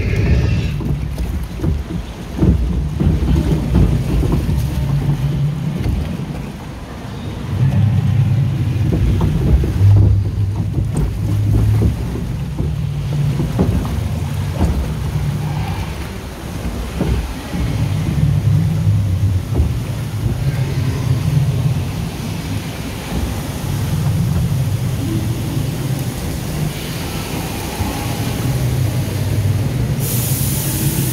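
Log flume ride boat travelling along its water channel: a continuous low, uneven rush of water against the hull that swells and eases every few seconds, with a few short knocks near the middle.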